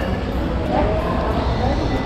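Steady background noise of a busy indoor public space: a low rumble with faint, indistinct voices.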